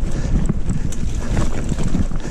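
Wind buffeting the camera's microphone over the rumble and rattle of a mountain bike moving fast along a dirt trail, with many small knocks and clicks from the bike jolting over the ground.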